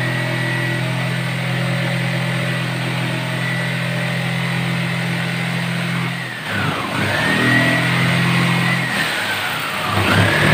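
A motor running with a steady hum, then its pitch dropping and climbing back again three times in the last few seconds.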